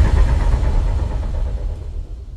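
Low rumbling tail of a logo-intro sound effect, dying away steadily.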